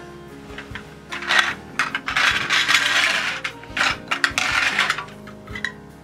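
Hard plastic shape-sorter pieces clattering and rattling against the plastic bucket in several bursts, with a toy's electronic melody playing faintly underneath.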